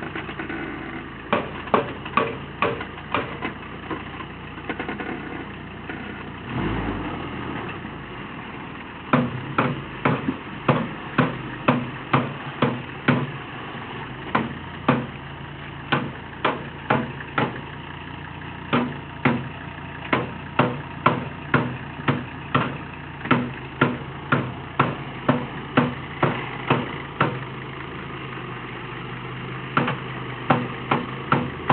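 Repeated hammer blows on sheet metal, irregular at first and then about two a second, over a diesel engine idling. The bodywork is being beaten back so large Super Swamper tyres stop catching on it. The engine rises briefly about six to seven seconds in.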